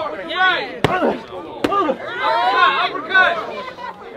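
Two sharp smacks of boxing-glove punches landing, about a second in and again under a second later, amid loud shouting from the crowd.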